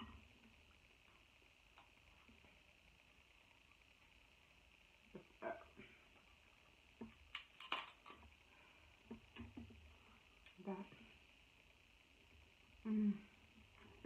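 Soft, scattered eating sounds as a cooked king crab leg is pulled apart by hand and eaten: a few short cracks and mouth sounds with quiet gaps between, and a brief voiced sound near the end.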